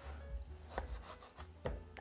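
Two faint strokes about a second apart, as a chef's knife slices firm, briefly frozen sirloin on a plastic cutting board.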